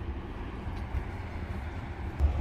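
Steady low rumble of outdoor background noise, with no distinct sounds standing out.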